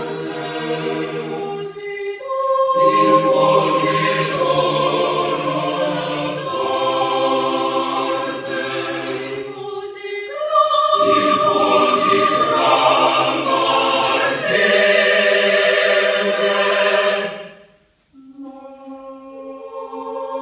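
Mixed choir of women's and men's voices singing a cappella: sustained chords in phrases with short breaths between them. The sound cuts off sharply about 17 seconds in, and after a brief silence the choir comes back in more softly.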